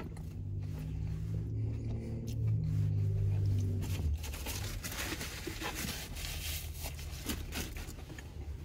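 Paper food wrapper rustling and crinkling as it is handled, with a low steady hum during the first half that stops about four seconds in.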